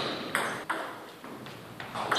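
Table tennis ball strokes: two sharp clicks of ball on bat and table in the first second, each with a short echo, then a lull before the clicks start again right at the end.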